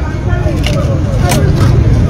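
Voices of people talking at a street checkpoint over a steady low rumble, with two short clicks partway through.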